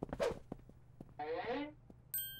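A short swish of noise just after the start and faint scattered ticks, then a brief pitched voice-like sound, a short hum or syllable, lasting about half a second in the second half.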